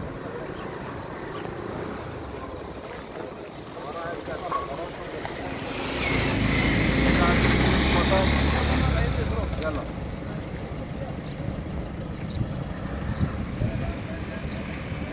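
Street traffic noise, with a car passing close by: a swelling engine-and-tyre sound that builds about five seconds in, is loudest around seven to nine seconds, and fades by about ten seconds.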